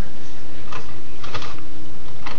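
Light handling noise as skinless sausages are picked up off a plate: three faint soft clicks over a steady background hum.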